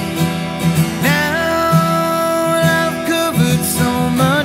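Live acoustic guitar song: the acoustic guitar is strummed in a steady rhythm. Over it, a long held melody note slides up into pitch about a second in, followed by shorter sliding notes near the end.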